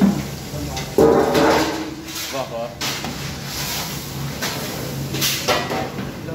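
Indistinct voices talking, over a steady low hum.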